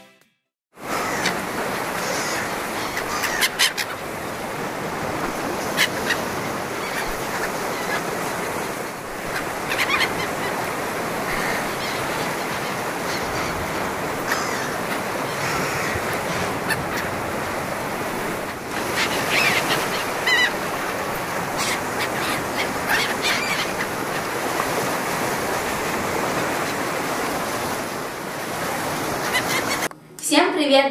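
Steady wash of sea surf with a few short bird calls scattered through it, beginning about a second in.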